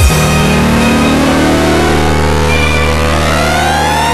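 Frenchcore track in a build-up: the pounding beat drops out at the start, leaving a held low bass drone under a synth sweep that rises steadily in pitch.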